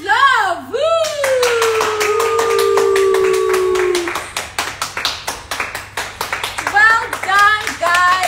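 A woman clapping her hands fast and steadily from about a second in, over her own excited wordless vocalising. It starts with swooping cries, then a long held note that slowly falls in pitch, and short rising squeals near the end.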